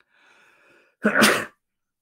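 A man's single loud cough about a second in, after a faint breath in.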